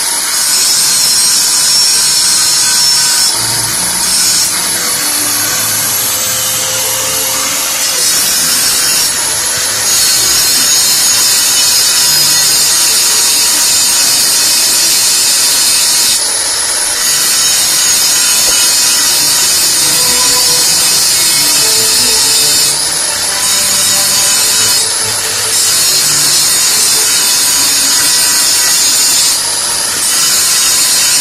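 Electric angle grinder with an abrasive disc grinding down a weld on square steel tubing: a loud, steady, high-pitched grinding whine, broken by several short changes in the noise.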